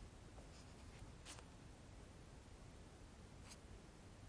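Near silence with two faint, brief rustles of photo prints being handled, a second or so in and again near the end.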